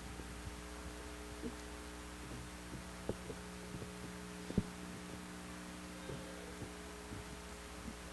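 Steady low electrical hum from the sound system, with a few soft knocks scattered through, the loudest about four and a half seconds in.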